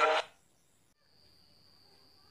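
A chanted Arabic prayer ends abruptly a quarter of a second in. Near silence follows, and from about a second in a faint, steady high-pitched tone holds at one pitch.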